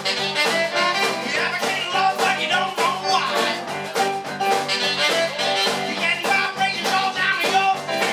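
Live band playing with a steady beat: electric guitar, keyboard and saxophone over drums, amplified in a small room.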